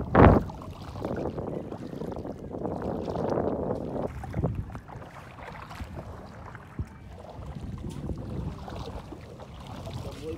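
Wind buffeting the microphone over shallow lapping water, with a loud thump right at the start and a couple of smaller knocks later.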